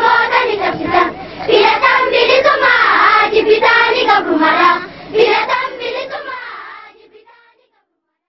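A group of children singing together, fading out near the end.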